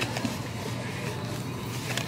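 Faint background music under a steady room hum of store noise.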